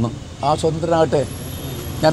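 A man speaking Malayalam for under a second, then a short pause in which only a steady low background rumble remains.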